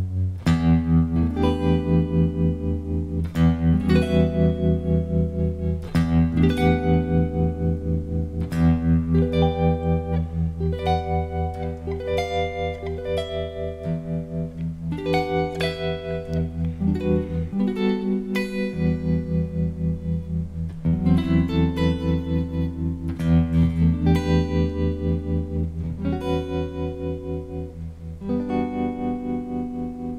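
Electric guitar played through a vibrato pedal: chords and notes struck every second or two and left to ring, with a fast, steady wobble running through them.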